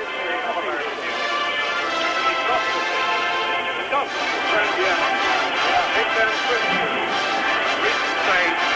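A massed band of about 150 fanfare trumpets sounding a fanfare of long held notes in many parts.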